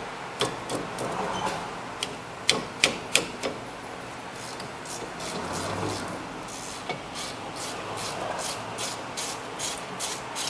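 Wrench working the 13 mm rear brake caliper mounting bracket bolts to break them loose: a series of sharp metallic clicks, the loudest a few seconds in, then a fairly regular run of about three a second.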